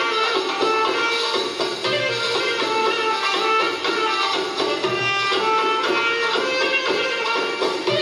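Recorded belly dance music with plucked strings carrying a melody, played over the venue's PA speakers.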